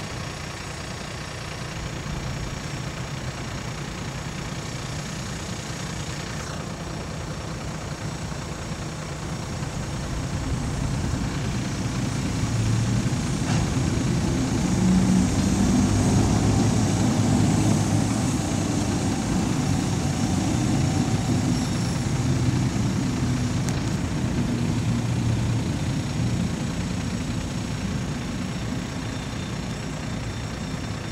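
Engine of a ChME3 diesel shunting locomotive running as it hauls freight wagons across a road level crossing, with the wagons rolling past. The engine grows louder about ten seconds in and is loudest as the locomotive passes, then eases off toward the end.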